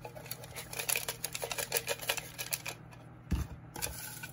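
Folded paper slips rattling and clicking against the sides of a glass container as it is shaken, a fast run of light clicks lasting nearly three seconds. A dull thump follows, then a softer one just before the end.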